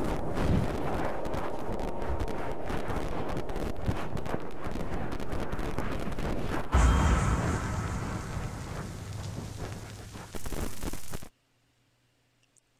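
Horror trailer sound design: dense crackling, glitchy static. About seven seconds in comes a heavy low boom that fades away over a few seconds, then a short burst of hiss that cuts off suddenly near the end.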